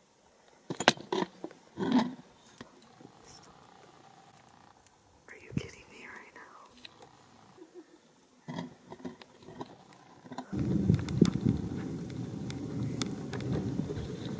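Hushed whispering voice with a few sharp knocks and rustles, like a phone being handled. About ten seconds in, a steady rushing noise sets in.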